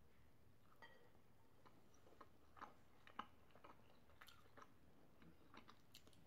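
Very faint chewing of a bite of cheese-stuffed pizza crust: scattered soft clicks and mouth noises.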